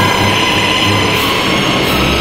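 Background music: a sustained, hissy, dense texture with a few held high tones.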